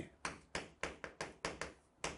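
A stick of chalk tapping sharply against a chalkboard with each stroke of handwriting, a quick run of taps at about four a second.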